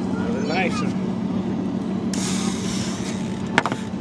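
Steady low hum of a boat motor running, with a splash of water lasting about a second, about two seconds in, as a hooked hybrid striped bass is netted at the side of the boat. A single sharp knock near the end.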